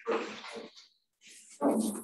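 A person's voice in short, indistinct utterances, with a brief pause about a second in.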